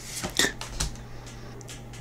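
Trading cards flicking and sliding against each other as the top card is moved off the stack in hand: a few short soft clicks in the first second, then only a faint steady hum.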